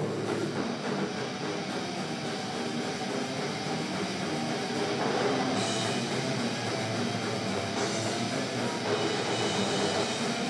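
Heavy metal band playing live with distorted electric guitars, bass guitar and drum kit, without vocals; the sound is a dense, steady wall.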